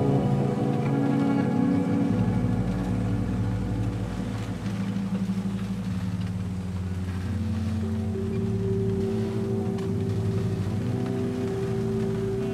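Instrumental music of sustained chords that shift every few seconds, with no singing.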